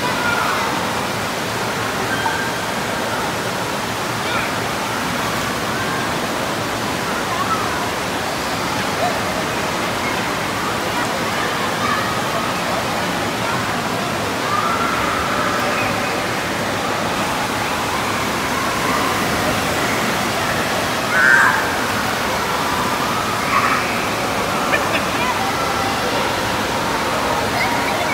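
Steady rush of churning water in an indoor water park's lazy river, with scattered distant voices of children and adults over it.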